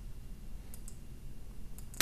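A few faint clicks at the computer, about three-quarters of a second in and again near the end, finishing on a sharper click, over a low steady hum.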